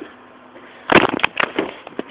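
Handling noise from the camera being moved: after a quiet second, a short cluster of sharp crackles and knocks, then a few fainter ticks.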